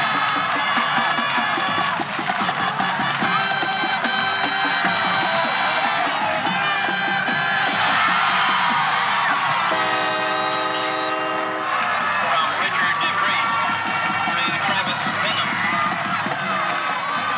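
Crowd noise in the stands at a high school football game, with held brass notes over it and one long, strong horn note about ten seconds in.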